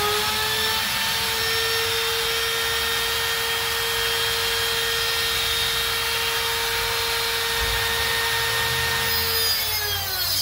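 Angle grinder running freely at full speed with a steady high whine. Near the end its pitch drops as the disc bites into the steel bar of a wrought-iron gate and grinding begins.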